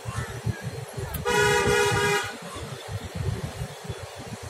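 A vehicle horn sounds one steady honk lasting about a second, over a low, uneven rumble.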